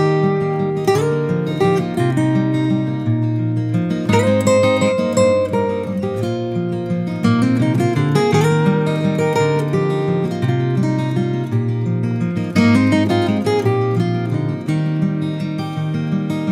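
Slow acoustic guitar music, strummed and picked, in an instrumental passage with no singing.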